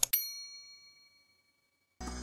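A last key-click, then a single bright bell ding that rings and fades away over about a second and a half: an intro chime sound effect closing a typing animation.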